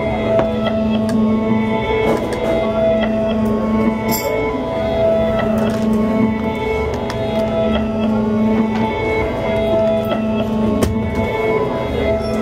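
Live instrumental song introduction on a Gibson electric guitar, a repeating phrase of held notes.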